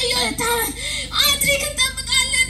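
A high-pitched voice holding long, wavering notes, sung or wailed, strongest in the second half.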